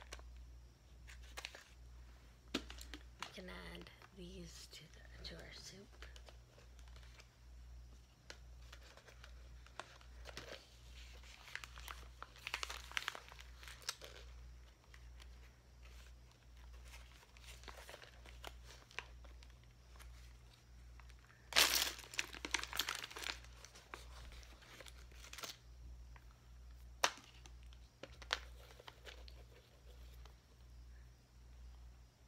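Crinkling of a clear zip-lock plastic bag of vintage buttons being handled, with scattered small clicks. The bursts come on and off, and the loudest comes a little past two-thirds through.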